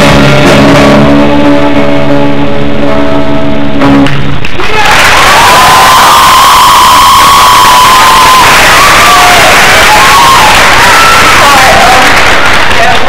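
A live rock band's final chord rings out on electric guitars and drums for about four and a half seconds, then stops, and the audience cheers and applauds loudly, with a long shrill whistle over the cheering.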